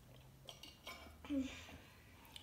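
Small tabletop clicks and knocks, the loudest about a second and a half in, as a stainless steel drinking tumbler is set down on the table.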